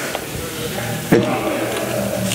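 A single sharp metallic click about a second in, a steel carabiner gate snapping shut as a cow's tail lanyard is clipped into it. It sits over steady background music.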